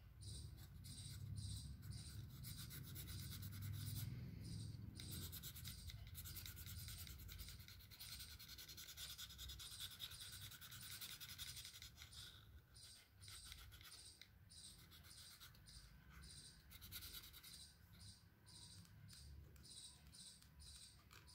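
Faint scratching of a felt-tip sketch pen colouring in on white card, in short repeated strokes.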